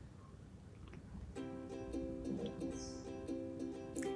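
Quiet background music, a melody that comes in about a second and a half in after a faint, nearly silent start.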